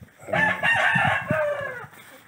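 A rooster crowing once, a call of about a second and a half that drops in pitch at the end.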